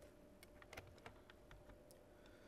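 Near-silent room tone with a faint steady hum and a handful of faint, scattered clicks from a computer being operated.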